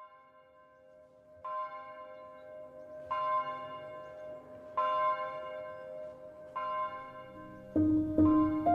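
A bell struck five times, roughly every one and a half seconds, each stroke ringing on over the last; the first stroke is faint. Piano music comes in near the end.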